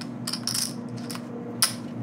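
Poker chips clicking and clacking in a few short, sharp bursts, the sharpest near the end, over a steady low hum.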